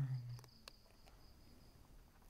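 A voice holds the end of a word for the first half second, then fades. After that a cricket keeps up a steady high trill.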